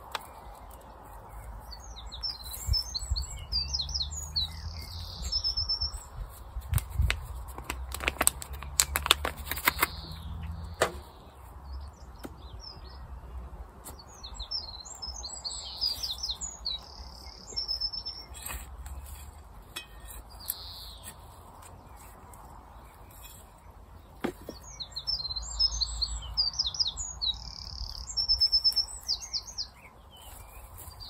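A small songbird singing in three bouts of quick, high chirps and trills. Between them come a few sharp knocks and rustles of a plant pot and soil being handled as a tomato seedling is planted.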